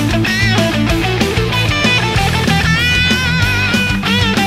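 Epiphone 1958 Korina Flying V electric guitar with Burstbucker humbuckers, played through an overdriven Marshall amp: a lead line of quick bent notes over low sustained chords, then one note held with wide vibrato from a little past halfway.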